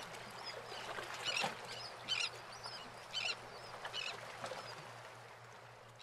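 Faint outdoor ambience by the water, with birds giving short calls about once a second over a low steady hum.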